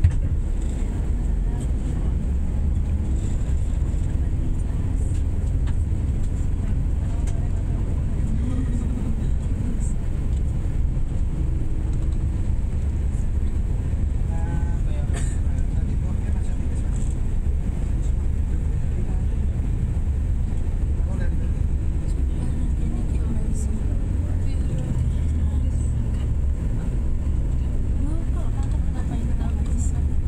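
Steady low rumble of a bus's engine and tyres on the road, heard from inside the moving cabin.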